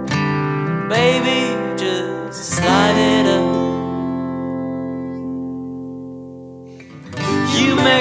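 Band music led by acoustic guitar, with brief wordless sung notes early on. A chord is then held and slowly dies away for several seconds before the band comes back in near the end.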